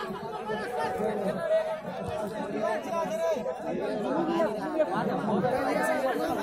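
Spectators chattering, many voices overlapping at once with no single voice standing out.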